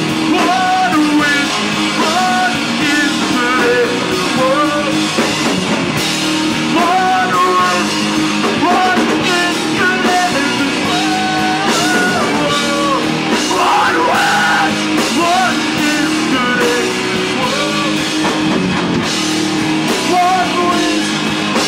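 Live punk rock band playing loud: electric guitar, bass and a drum kit, with a singer's vocals over them.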